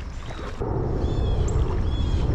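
An airplane flying over, a steady low drone that swells a little about half a second in.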